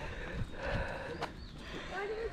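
A few footsteps on a bare rock path, sharp short clicks over a low uneven rumble on the microphone.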